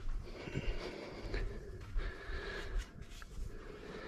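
Faint footsteps and body-movement rustle picked up by a head-mounted camera as the wearer walks around a pool table, with a few soft thumps and small clicks.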